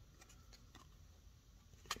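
Near silence: room tone, with a single faint click just before the end.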